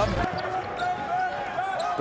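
Live arena sound of a college basketball game: a basketball dribbled on a hardwood court, with voices faintly in the background.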